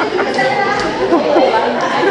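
Indistinct chatter of several people talking at once, with the echo of a large hard-floored hall.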